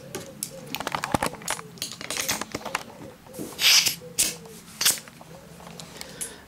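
Compressed-air blow gun being fitted to the workshop compressor's air line: a run of sharp clicks from the fittings, then several short bursts of air hiss, the loudest a little past halfway.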